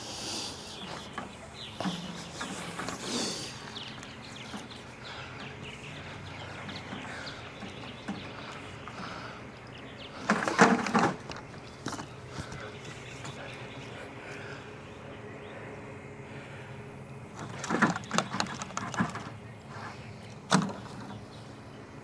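A clear plastic swarm-capture jug on a long pole being handled: a short burst of knocks and rustling about ten seconds in as it is jolted in the tree branches. Another cluster of knocks and clatter comes a little before twenty seconds as it is lowered and shaken out, over a quiet outdoor background.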